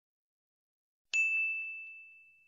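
Silence, then about a second in a single high bell-like ding that rings on and fades away.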